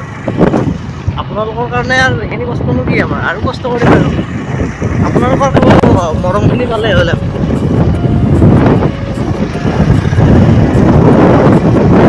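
A person's voice speaking over continuous loud rumbling noise, which is heaviest in the second half.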